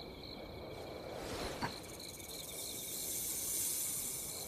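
Night ambience of crickets chirping steadily in pulses, with a faint click about one and a half seconds in. A soft high hiss builds in the second half as a small snake appears.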